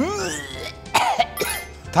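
A man coughing and clearing his throat: a long vocal sound that rises then falls in pitch, then a harsh cough about a second in, over background music.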